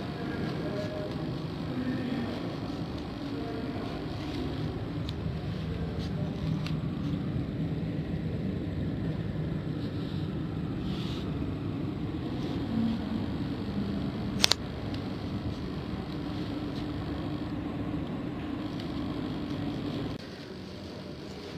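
Steady indoor room noise, a low hum and hush with faint voices in the background. There is one sharp click about three quarters of the way through.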